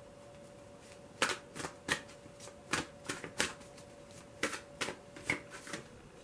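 A small deck of cards being shuffled by hand: a run of irregular sharp snaps and flicks that begins about a second in and stops just before the end, over a faint steady hum.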